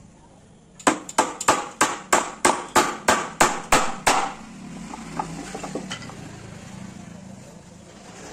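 Small hammer nailing a plywood joint: a run of about a dozen quick, sharp blows, roughly three a second, starting about a second in and stopping after about four seconds, followed by a few light taps and handling of the wood.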